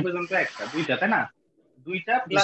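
Speech: a voice talking through the first second and a half, with a hiss riding over it in the first second, then a short pause and talking again near the end.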